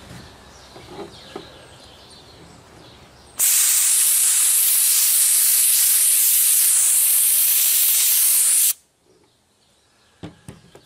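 Lematec handheld portable sandblaster gun blasting abrasive media on compressed air at about 60 PSI onto a rusty steel adjustable wrench to strip the rust. It makes a loud, steady hiss that starts suddenly about three and a half seconds in and cuts off sharply about five seconds later.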